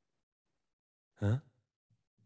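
Silence, then about a second in a man's voice gives a single short questioning "huh?".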